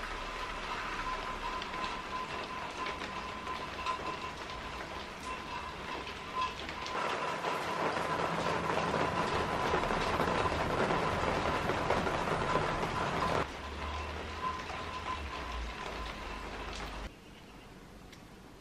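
Steady rain falling, an even hiss that grows louder for several seconds in the middle and drops back near the end.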